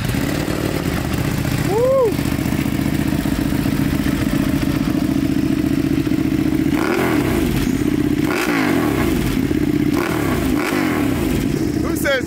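Ducati Panigale V2's 955 cc V-twin, fitted with a full titanium exhaust, idling steadily. It is revved in one short blip about two seconds in, then in several quick blips over the last five seconds.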